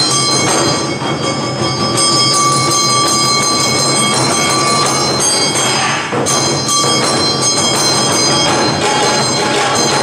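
Live Awa-odori hayashi music: taiko drums beating the dance rhythm under the continuous metallic ringing of kane hand gongs, with a high held melody note for a few seconds in the middle, typical of the shinobue flute.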